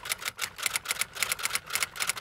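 Rapid typewriter key clicking, in quick runs of strokes with short gaps between them.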